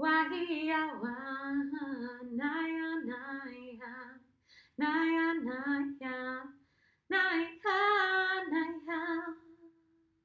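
A woman singing unaccompanied in wordless light-language syllables. Three phrases with short breaks between them, her voice stepping between a few low notes, the last phrase ending on a held note that fades out just before the end.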